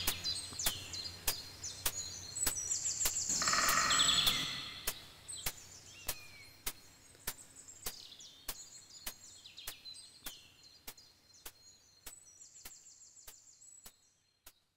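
Woodland birds chirping and trilling, with a sharp knock repeating evenly a little under twice a second. Both fade gradually away, and the tail of a synth and Mellotron track dies out in the first moment.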